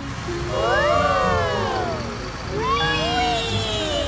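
Several cartoon children's voices crying out together in long rising-and-falling whoops, twice, as the yellow bus lurches and speeds off, over a low steady engine rumble.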